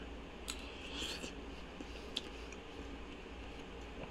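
Faint eating sounds: a metal spoon taken into the mouth and a mouthful of hot gumbo chewed, with a few small clicks over a low steady room hum.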